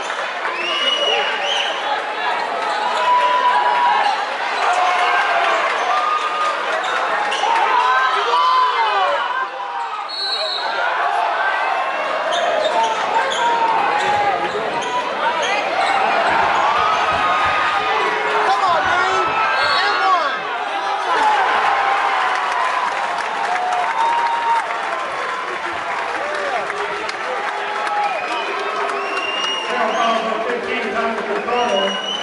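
A basketball bouncing and being dribbled on a hardwood gym floor, under a steady mix of many voices and shouts from players and spectators.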